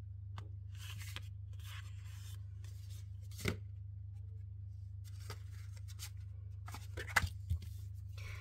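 Card stock being handled on a craft mat: soft paper sliding and rustling, a sharp tap about three and a half seconds in and a few quick clicks near the end, over a steady low hum.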